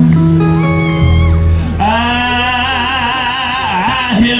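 Live gospel quartet band music: held chords over a low bass note, then about halfway through a singer holds one long note with vibrato.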